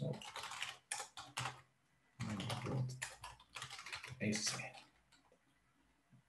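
Typing on a computer keyboard: runs of keystrokes as a terminal command is entered, with a voice murmuring over parts of it, then falling quiet near the end.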